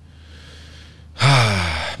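A man sighing close to a microphone: a quiet breath in, then about a second in a loud, breathy voiced sigh out that falls in pitch and fades over just under a second.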